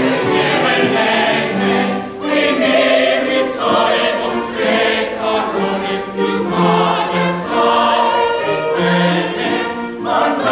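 Mixed chorus of men's and women's voices singing a Baroque opera chorus together, phrase after phrase, with a short break in the sound about two seconds in.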